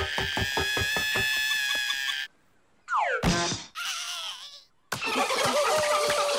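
Cartoon soundtrack: music with a fast, even pulse that cuts off about two seconds in. After a brief silence comes a falling whistle ending in a hit and a short noisy clatter, and the music starts again near the end.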